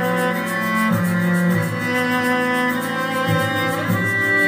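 Cello bowed in long sustained notes over several other sustained cello layers played back by a loop station, the harmony shifting about every second.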